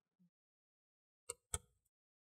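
Near silence, with two faint, short handling clicks about a quarter second apart, around a second and a half in.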